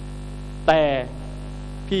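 Steady electrical mains hum, a low buzz with several evenly spaced tones, carried on the speech audio. A single short spoken word breaks in about two-thirds of a second in.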